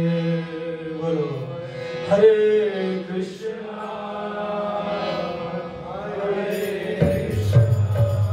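Kirtan: voices chanting a devotional mantra over the steady held notes of a harmonium. About seven seconds in, a lower note joins and metallic jingling comes in.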